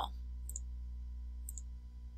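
Two faint computer mouse clicks about a second apart, over a steady low hum.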